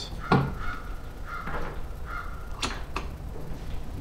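A sharp click from the metal crossbar of a Swagman pickup-bed bike rack as it is pushed down, followed by three drawn-out high tones and two light knocks a little under three seconds in.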